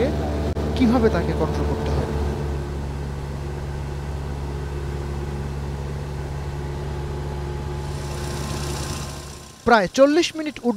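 Steady drone of a four-seat single-engine training aircraft's piston engine and propeller in flight, heard from inside the cabin. A voice talks over it for the first two seconds or so. The drone fades out about half a second before the end.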